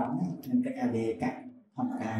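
Only speech: a man talking, with a short pause near the end.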